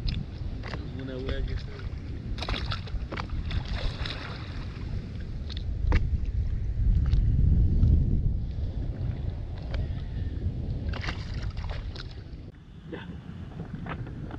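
Wind buffeting the microphone in a steady deep rumble, swelling loudest from about six to eight seconds in, with scattered sharp clicks and knocks.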